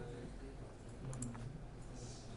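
Faint computer mouse clicks, a couple about a second in, over a low steady room hum.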